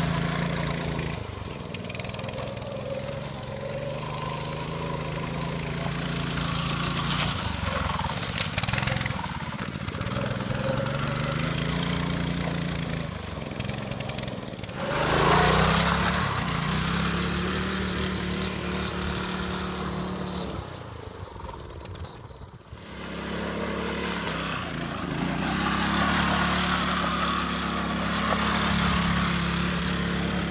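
Harbor Freight Predator 212 single-cylinder four-stroke engine on a go-kart, revving up and easing off again and again as the kart is driven. About halfway through there is a loud rushing noise, and a little later the engine note drops briefly before picking back up.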